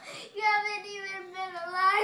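A girl's voice holding one long sung note for about a second and a half, starting a moment in, with only a slight waver.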